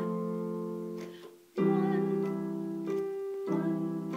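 Digital keyboard in a piano voice playing sustained chords with both hands. A chord is struck at the start and fades almost to nothing, a louder chord comes in about one and a half seconds in, and the harmony changes again near three and a half seconds. These are plausibly one and five-seven chords in C major.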